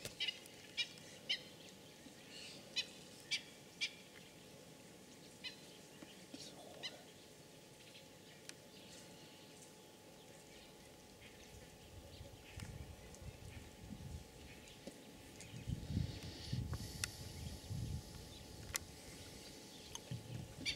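Birds calling: a dozen or so short, sharp calls, several in quick pairs, in the first seven seconds, then only a few more. A low rumbling noise builds through the second half and is loudest near the end.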